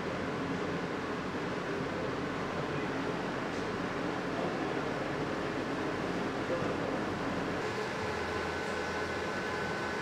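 Steady fan and air-conditioning noise: an even hiss over a low hum. A faint high steady tone comes in about three-quarters of the way through.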